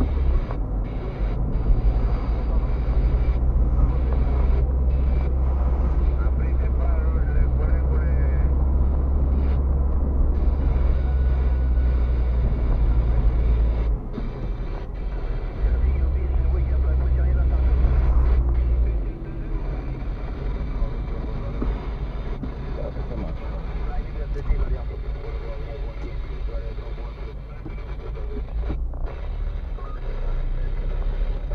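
Inside a moving car: steady low road and engine rumble of city driving, which drops off about two-thirds of the way through as the car slows.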